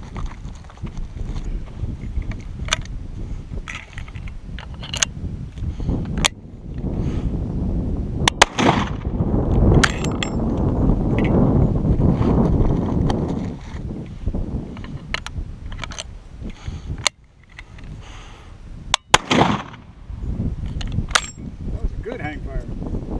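Martini-Henry carbine firing .577/450 rounds: two loud shots with an echoing tail, about eight seconds and nineteen seconds in. Between them come sharp clicks and clacks of the lever-worked falling-block action being opened and closed and cartridges being handled.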